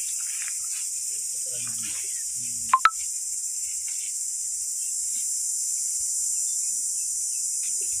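Steady high-pitched insect drone, with faint voices in the distance. About three seconds in, two sharp clicks a split second apart are the loudest sounds.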